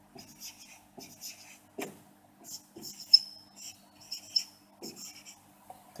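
Marker pen writing on a whiteboard: a run of short scratchy strokes, with a brief high squeak about three seconds in.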